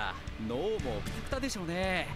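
Anime dialogue: a voice speaking a line over background music.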